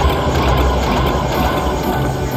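Huff N' More Puff slot machine playing a rushing wind sound effect as the houses on its reels are blown apart during the bonus round.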